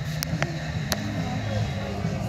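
Steady low background hum of a shop floor, with three light clicks in the first second.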